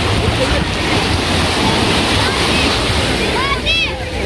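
Sea surf washing in around people wading in shallow water, a steady rush with wind rumbling on the microphone. Short high-pitched voice calls rise over it near the end.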